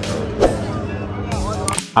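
Background music over faint outdoor voices, with one sharp crack about half a second in.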